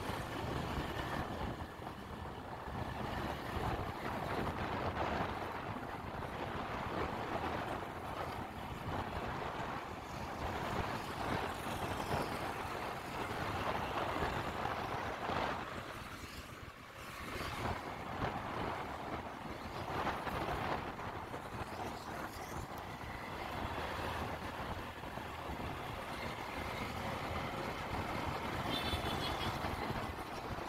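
Motorcycle riding noise heard from the rider's seat: wind rushing over the microphone mixed with engine and road noise, easing briefly about halfway through.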